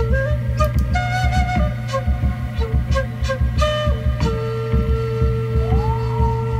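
Background music: a flute melody of short notes that settles into one long held note about four seconds in, over a steady low drone and a regular beat.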